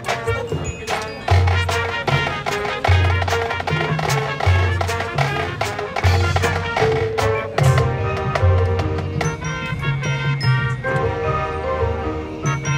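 High school marching band playing on the field: brass and sousaphones over drumline percussion, with a low bass note pulsing under the music about every second and a half and sharp drum strikes throughout.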